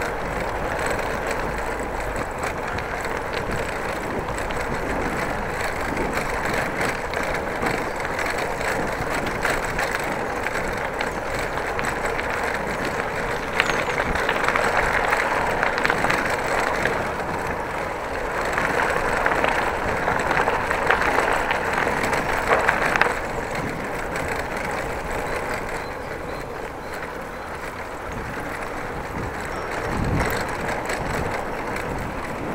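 A bicycle being ridden along a narrow gravel path: the steady noise of its tyres rolling on the gravel, louder for two stretches about halfway through.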